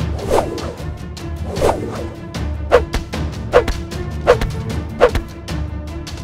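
A run of six short whoosh sound effects that come quicker and quicker, going with the robber minifigure snatching up stacks of Lego cash, over steady background music.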